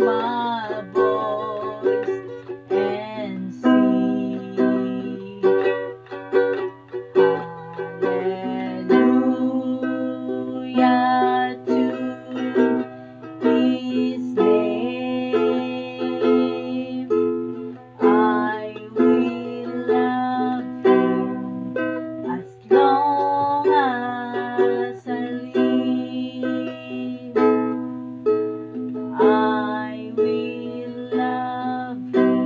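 A woman singing a Christian song while strumming her own accompaniment on a small acoustic string instrument, in a small room.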